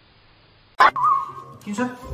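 Near quiet for under a second, then a sudden loud knock and a dog whining in one high held note, followed by shorter dog sounds near the end.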